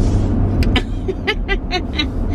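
A woman laughing in a quick run of short bursts, over the steady low rumble of road and engine noise inside a moving car.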